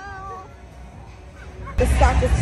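A person's drawn-out, high-pitched wailing note, held at one steady pitch and trailing off about half a second in. Near the end, loud music and voices cut in suddenly.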